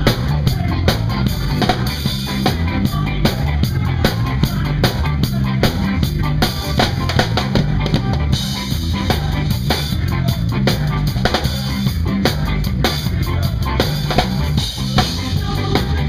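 Live ska-punk band playing an instrumental passage: a drum kit with a steady run of snare, bass drum and cymbal hits over electric bass, guitar and keyboard.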